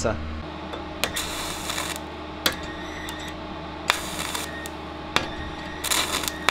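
Stick-welding arc from a 3 mm electrode at 40 A with arc force switched off, striking in short crackling spurts punctuated by sharp clicks, over a steady hum. It keeps going out: at this current without arc force the electrode barely wants to burn and only spits.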